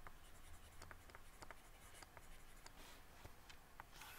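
Near silence, with faint scattered ticks and light scratching of a stylus working on a graphics tablet.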